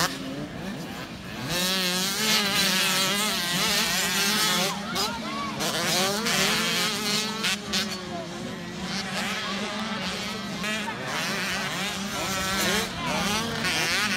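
Several youth 85cc two-stroke motocross bikes racing on a dirt track, their engines revving and easing off over and over, so their pitch wavers up and down.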